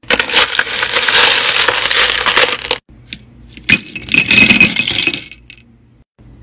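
Tumbled crystal stones clattering against each other as a scoop digs through a bin of them, a dense rattle of many small clicks lasting about three seconds. After a short pause comes a second, shorter clatter of stones with a brief ringing note in it.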